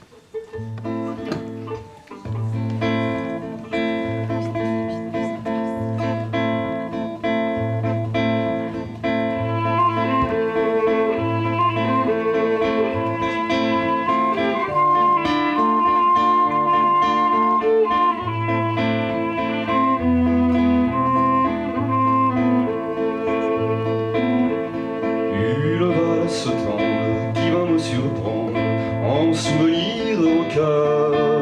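Waltz played on a classical guitar, with a violin holding long melody notes over the guitar's repeating bass-and-chord accompaniment. The music starts about a second in.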